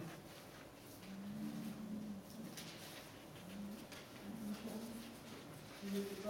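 Faint rustling of Bible pages being turned, with a low hummed voice sounding a few times: once for about a second, then in shorter bits.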